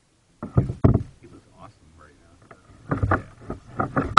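Hollow knocks and thuds carried through a plastic kayak hull, most likely the paddle striking the hull or gunwale, in uneven bursts that begin about half a second in.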